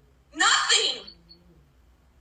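A single short burst of a person's voice, about two-thirds of a second long, with near silence before and after it.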